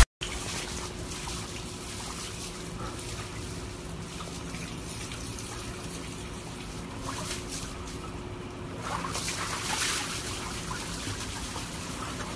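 Water trickling and sloshing in a plastic tub as huskies move about in it, a little louder about nine seconds in, over a faint steady hum.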